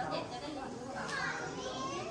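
Indistinct chatter of children's voices, several talking over one another at once.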